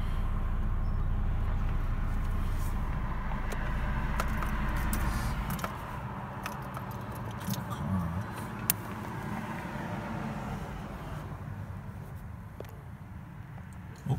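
Car engine idling, heard from inside the cabin, then switched off about five and a half seconds in. Small clicks and rattles follow inside the car.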